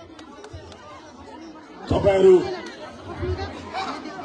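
People talking among crowd chatter, with one loud voice breaking in about two seconds in.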